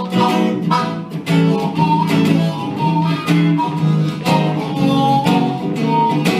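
Electric guitar played in a blues style, with strummed and picked chords striking every fraction of a second, and a harmonica playing held notes along with it.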